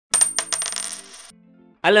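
Coin-drop sound effect: three quick metallic clinks of a coin landing and spinning, then a high ringing that dies away about a second in.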